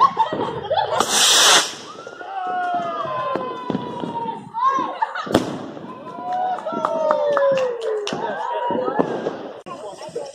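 Fireworks: a loud hissing rush about a second in as one is launched, then a single sharp bang a little after five seconds.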